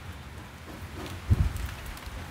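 Soft, steady patter of falling water, with one dull low thump about one and a half seconds in.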